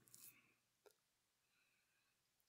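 Near silence: a pause between spoken sentences, with only a faint tick.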